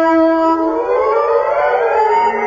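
Radio-drama music bridge: a held brass note, then about a second in a glide of several pitches at once that climbs for about a second.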